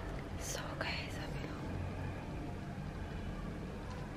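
Soft whispering early on, faint against a low steady hum and hiss of room noise.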